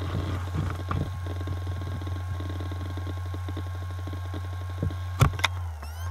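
Acer Aspire laptop hard drive heard close up: a steady low hum from the spinning drive, with irregular rapid ticking of head activity and two sharper knocks near the end. The drive keeps trying to spin down and sleep at random, a fault the owner can't place between the drive, the motherboard and the EFI firmware.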